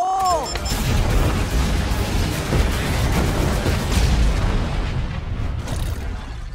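A rapid series of explosions that merge into one continuous rumble for about five seconds, easing off near the end.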